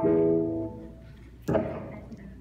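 A chord struck on a guitar and left to ring and fade, then a second, sharper chord about a second and a half in.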